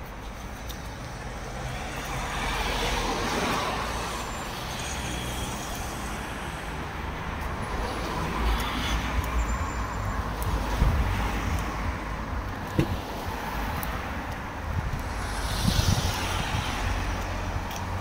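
Road traffic on a busy street: cars driving past, their sound swelling a few seconds in and again near the end over a steady low rumble.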